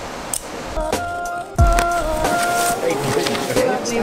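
Rustling, crinkling and scraping of a foam wrap sheet and cardboard packaging as a drone box is unpacked, with sharp clicks and a louder rustle about one and a half seconds in, over held musical notes.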